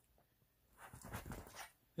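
Near silence, then about a second in a small dog makes faint, soft sounds for under a second.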